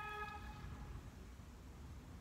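Small spinning reel whirring with a steady whine while a heavy hooked fish is played on an ultralight rod, fading out within the first second. After that only a faint low rumble remains.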